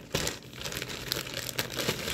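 Plastic courier mailer bag crinkling and crackling as it is pulled and torn open by hand.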